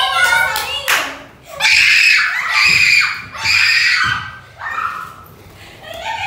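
Girls screaming in three long, high-pitched shrieks, startled by a small bird flying loose in the house, with a sharp knock about a second in.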